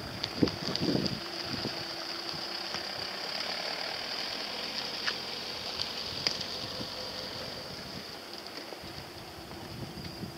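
Crickets chirring in the coastal scrub: a steady high-pitched hiss. Under it a faint steady engine hum, with a few light clicks.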